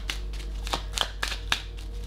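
Tarot cards being shuffled in the hands: an irregular run of sharp card clicks and snaps over a low steady hum.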